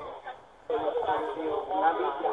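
Speech only: after a short pause, a man's voice on a phone call played through a loudspeaker begins about two-thirds of a second in, thin and cut off in the highs as a phone line sounds.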